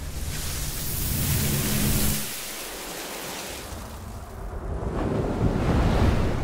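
A rushing, wind-like noise swells over about two seconds over a low hum, and both cut off suddenly. A second rush then builds near the end.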